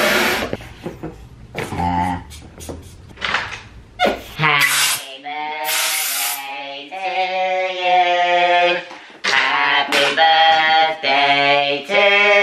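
A helium tank valve hissing into a balloon, cutting off just after the start, then a few clicks and handling sounds. From about four seconds in, a voice holds long, steady sung notes, one after another.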